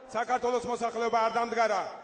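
A man speaking, in words the recogniser did not transcribe.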